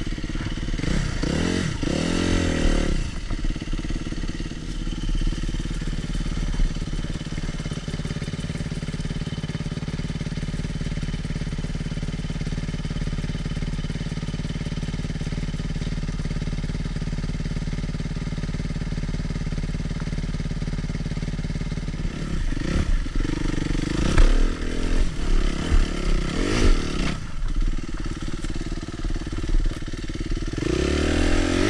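Suzuki RM-Z250 single-cylinder four-stroke dirt bike engine, heard close up from on the bike. It revs up and down in the first few seconds, holds a steady low speed for most of the time, then revs repeatedly again about three-quarters through.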